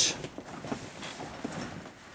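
Faint scuffing and light taps of a body turning on a grappling mat, with bare feet against a chain-link cage wall.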